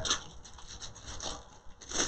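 Soft, irregular crinkling and rubbing of a sheet of metallic transfer foil being pressed down onto an adhesive-coated purse, a little louder near the end.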